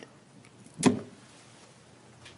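A man's single short cough about a second in, from a speaker who has been clearing his throat.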